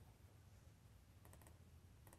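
Near silence: faint room tone with a quick run of faint computer mouse clicks a little past the middle.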